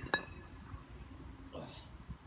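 Kettlebell set down on stone paving: a single clink with a brief ring just after the start.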